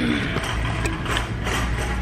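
Handling noise from a phone microphone: rubbing with a few faint clicks as the phone is held and moved, over a steady low hum.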